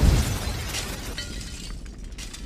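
Crash sound effect of breaking glass, fading away with scattered small clinks of falling pieces.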